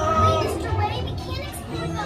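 Excited, high-pitched children's voices, one voice holding a high note for about half a second near the start.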